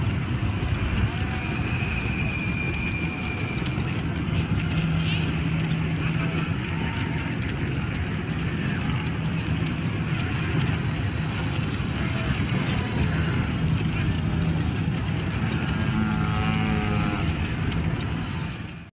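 Dense ambient soundscape of a busy street: a steady low rumble and hiss with muffled voices, and a few short whistles and chirps over it.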